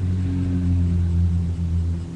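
A vehicle engine running with a steady low drone.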